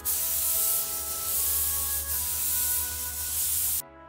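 Paint spray gun hissing steadily as it sprays a coat onto a dresser, cutting off suddenly just before the end.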